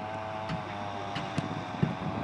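A steady motor hum with a slightly wavering pitch runs throughout, with a few sharp knocks.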